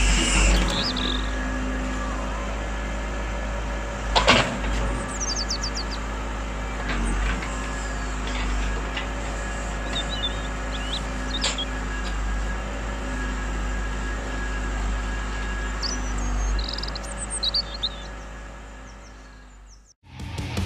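Radio-controlled excavator running with a steady motor whine while it digs, with a couple of sharp knocks of the bucket against rock about four seconds in and again near the middle. The sound fades out near the end.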